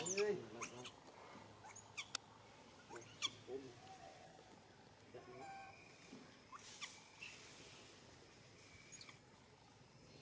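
Infant macaques giving short, high squeaks and whimpers, loudest about the first half-second, with a few sharp clicks scattered through.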